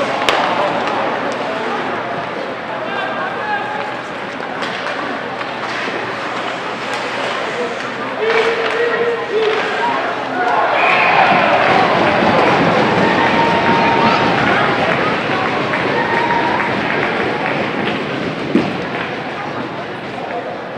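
Ice hockey game in an echoing arena: spectators and players shouting over the scrape of skates and scattered clacks of sticks and puck. The crowd noise swells about ten seconds in, and a single sharp knock comes near the end.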